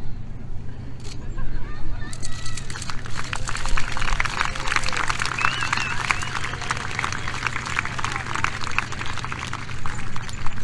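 Crowd applauding and cheering, beginning about two seconds in and dying away near the end, over a steady low hum.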